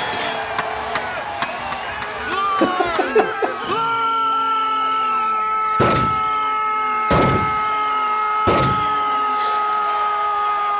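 Cartoon sound effects from an animated blernsball game: short gliding tones, then a long steady electronic tone that starts about four seconds in. Three sharp thuds sound over the tone, a little over a second apart.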